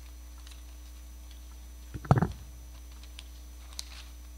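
Steady low electrical hum from the chamber's microphone system, broken about two seconds in by one short, loud thump of handling noise at a desk microphone, with a few faint clicks around it.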